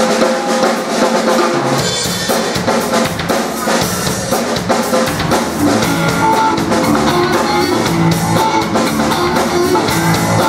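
Live rock band playing the start of a song: drum kit with kick and snare driving a beat over electric guitars. The full, deep low end comes in about two seconds in.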